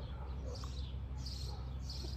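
Birds chirping in the background, a few short calls about half a second apart, over a low steady hum.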